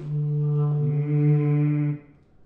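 Clarinet holding a long low note while the player sings a second pitch into the instrument, the sung line moving on its own against the steady clarinet tone. The note cuts off at the end.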